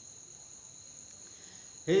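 Faint room tone: two steady high-pitched tones over a light hiss. A man's voice comes back in at the very end.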